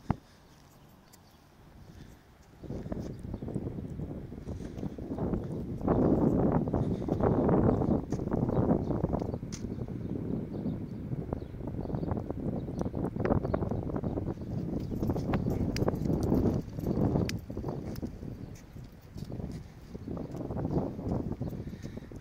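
Wind buffeting the microphone in irregular gusts, starting a couple of seconds in, with a few light clicks.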